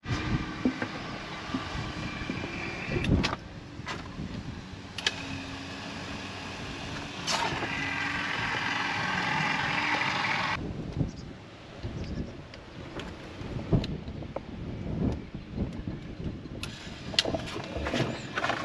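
Battery-powered caulking gun's electric motor running steadily as it pushes out sealant. It runs for about three seconds at the start, then again more strongly from about five to ten seconds, when it stops, with a few knocks in between and afterwards.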